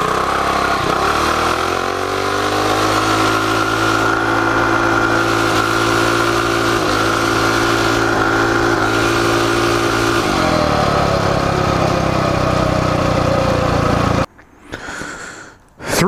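Coleman CT200U-EX minibike's single-cylinder four-stroke engine on full throttle from a standstill. The revs climb over the first few seconds, hold high for about seven seconds, then fall away as it slows, before the sound cuts off abruptly near the end. The minibike is geared down to 6.66:1, and the rider feels it is running too rich at the top of the revs from too big a main jet.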